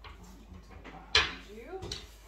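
A single sharp knock about a second in as a corded heat gun is handed across the table and lifted. Light handling sounds come before it.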